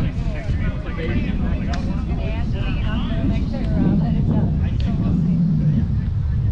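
Indistinct voices of players talking at a distance, over a steady low rumble of wind on the microphone.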